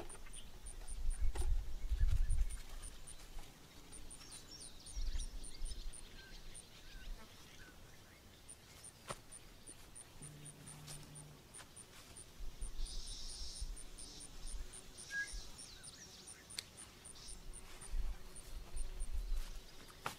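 Outdoor garden ambience: a faint high ticking repeating a few times a second, several spells of low rumble, and a short high chirp about three quarters of the way through.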